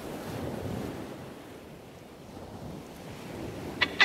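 Sea surf washing in, a steady rush that swells in the first second and then eases. Near the end a sharp strummed guitar chord cuts in, the loudest sound here.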